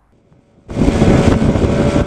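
Loud rush of wind and road noise from a camera moving at freeway speed, with vehicle engine sound in it, cutting in suddenly less than a second in.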